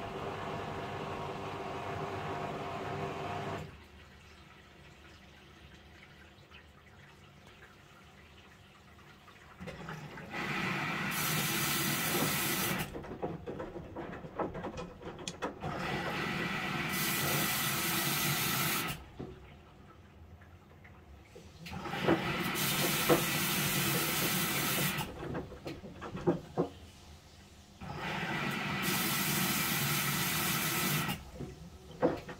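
Samsung WW75TA046TE front-loading washing machine on a quick wash: the drum turns with laundry for a few seconds, then it goes quieter. Then water hisses in through the inlet in four bursts of about three seconds each, each starting and stopping sharply.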